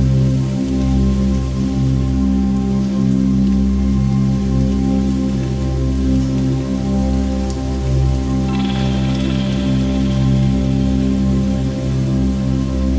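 Instrumental future-garage-style chill electronic music: sustained deep bass and held chord tones under a steady hiss-like texture, with a brighter high layer coming in about eight and a half seconds in and fading about three seconds later.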